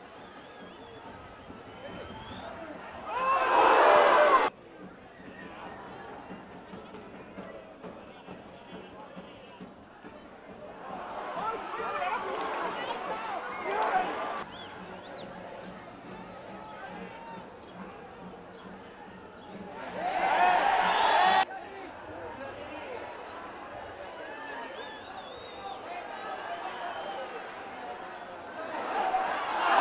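Football stadium crowd noise mixed with voices, swelling three times into loud surges of shouting. Each surge cuts off suddenly, as the match footage is edited between chances.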